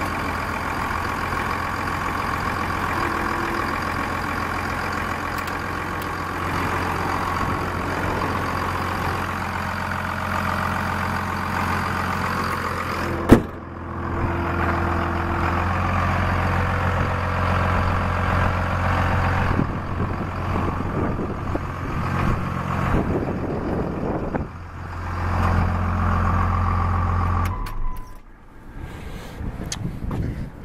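1999 Dodge Ram 2500's Cummins 5.9-litre inline-six turbo-diesel idling steadily with the oil filler cap off, showing absolutely no blow-by. A single sharp bang about 13 seconds in, probably the hood being shut, after which the engine sounds duller; it drops away near the end.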